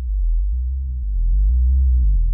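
GarageBand 'Sequence Element 4' synthesizer arpeggio playing with its filter cutoff near the lowest setting, so the repeating notes come through as a muffled, deep bass pulse with barely any upper tones.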